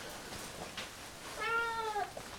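Siamese cat giving one meow, a little over half a second long, starting about one and a half seconds in, its pitch dipping slightly at the end.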